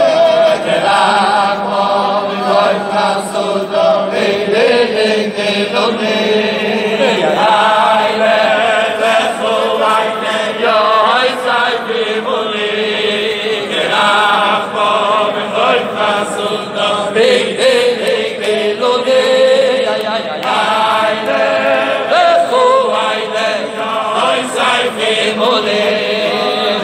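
A large group of Hasidic men singing a wedding-canopy melody together. The voices run on without a break.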